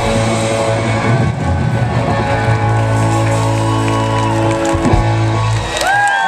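Live band holding a long sustained closing chord, which cuts off near the end as the crowd starts cheering and whooping.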